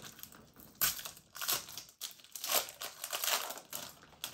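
Pokémon trading cards being handled and shuffled in the hands, making several short crinkly rustles.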